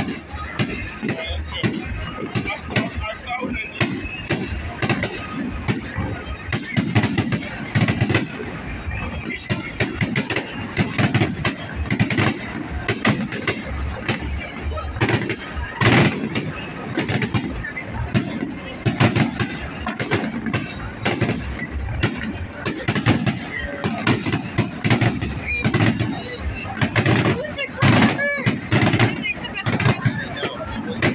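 A fireworks display going off in a dense, continuous barrage of bangs and crackles, with several louder booms standing out. The phone microphone makes the bursts sound like gunshots.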